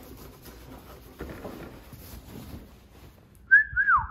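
A person whistles once near the end, a short note that rises slightly and then falls away. Before it there is only faint rubbing and handling noise from a rag being wiped over the scooter's handlebar.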